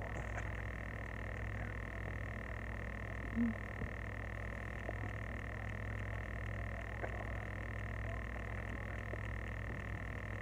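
Steady background drone: a constant low hum with a constant high whine over it, unchanged throughout. A short low tone stands out once, about three and a half seconds in.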